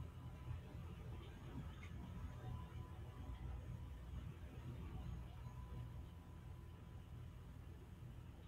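Faint steady low hum and hiss on the open live audio link from the International Space Station, with a thin steady tone in it and no other events.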